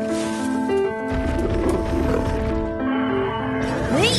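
Background music with a low animated dinosaur call, a Parasaurolophus call, from about a second in until about three and a half seconds, then a brief gliding sound at the very end.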